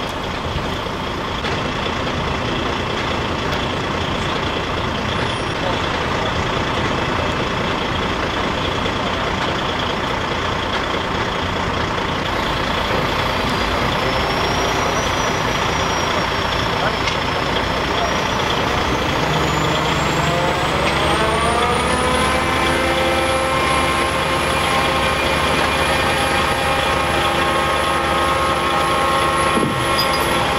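Heavy diesel engine of a large mobile crane running steadily. About two-thirds of the way through it revs up and holds the higher speed while it hoists a 21-ton precast concrete culvert section off a truck trailer.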